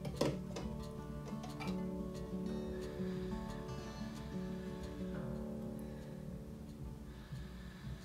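Background music of plucked acoustic guitar, with notes held and ringing, a few plucks standing out in the first two seconds.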